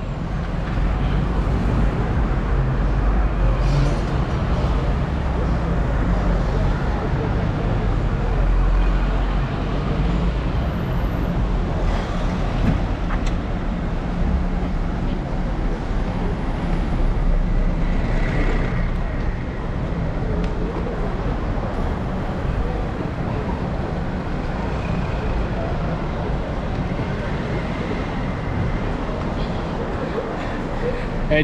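Road traffic on a busy city street: a steady low noise of cars and buses passing, a little louder over the first ten seconds.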